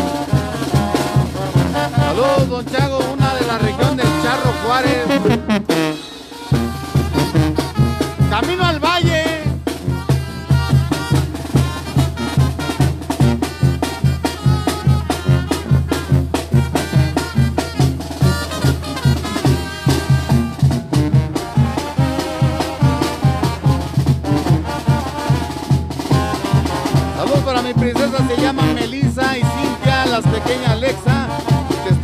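A live band playing, with brass and a steady low beat. The music drops out briefly about six seconds in, then comes back with a strong, regular bass beat.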